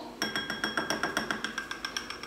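Quick run of light clinks, about six a second, from a metal measuring spoon tapping against a small glass bowl as starter yogurt is knocked off it into the bowl.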